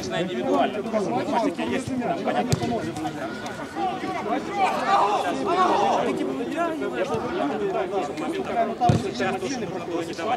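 Indistinct chatter of several voices talking over one another, with a sharp click about two and a half seconds in and a short low knock near the end.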